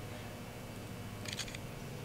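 Quiet room noise, with a brief soft metallic click and scrape a little past halfway as a digital caliper's jaws sit on and slide against a steel-backed engine rod bearing shell.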